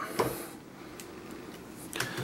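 Light handling of a plastic magnifier head on a gooseneck arm after its angle adjustment is tightened: a soft knock just after the start and a small click about a second in, over low room hiss.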